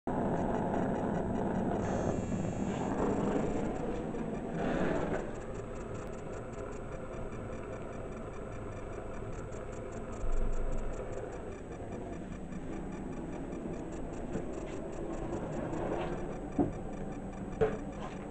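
Steady fast ticking over a constant low background noise, with a short louder noise about ten seconds in and two sharp clicks near the end.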